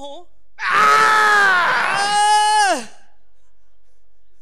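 A man's loud, strained wordless groaning yell, held for about two seconds and dropping in pitch as it dies away. It is a mock strain of effort, acting out trying hard not to get angry.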